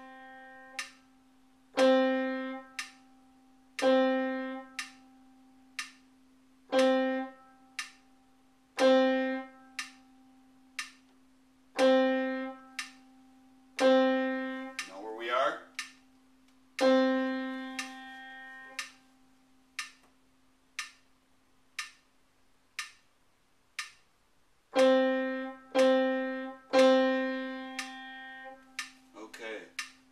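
One note on a pitched instrument played over and over in the rhythm of a quarter-note, half-note and rest counting exercise: short notes, one held for about three seconds, and a silent stretch of several beats. A faint steady click about once a second keeps the beat underneath.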